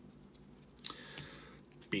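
Faint handling of a coiled white USB-C to Lightning charging cable as it is worked loose by hand, with two small sharp clicks about a second in.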